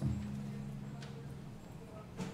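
A single low instrument note that starts suddenly and rings for about a second and a half as it fades.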